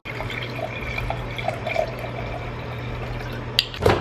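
Microwave oven running while reheating food: a steady low hum with fan whir. A single sharp click comes near the end.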